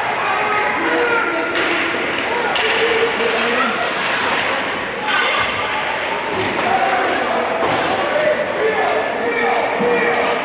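Ice hockey game in a reverberant indoor rink: indistinct voices calling out over the play, with sharp puck, stick and board impacts. The loudest is a crack about five seconds in.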